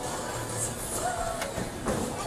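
Bowling alley background: a steady rumble of a ball rolling down a wooden lane, with faint chatter and a few soft knocks.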